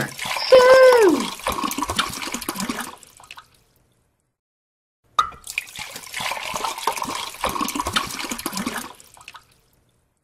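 Sound effect of water flowing and splashing, in two bursts of about three to four seconds each with a short gap between them. The first burst opens with a falling tone.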